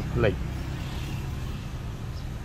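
A voice breaks off just after the start, followed by a steady, even low rumble of background noise with no distinct events.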